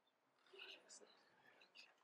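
Near silence with faint whispering and low voices, off the microphone.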